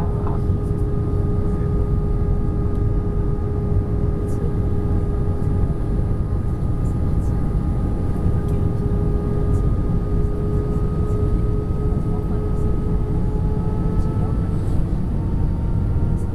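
Cabin noise inside an Airbus A320-232 on approach: a steady deep rush of airflow with the hum of its IAE V2500 engines at a few steady pitches, which creep slightly higher near the end.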